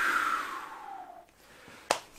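A whoosh sound effect sliding down in pitch and fading out by about a second in, followed by a short click near the end.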